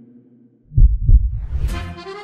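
Intro sound effect: a low drone fades out, then two deep thumps come a third of a second apart in a heartbeat-like double beat. Near the end a bright hit leads into music.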